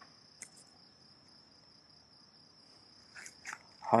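Steady, continuous high-pitched insect trill, cricket-like, with a faint click about half a second in.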